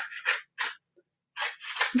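Scissors snipping through a cardboard tube in several short cuts, with pauses between them, as slits are cut into its end.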